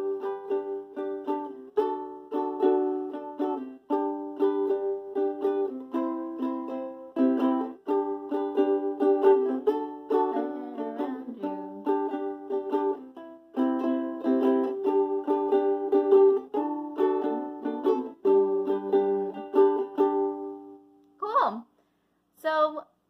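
Ukulele strummed with the index finger in a steady rhythm, changing chords every couple of seconds, then stopping about a second before the end.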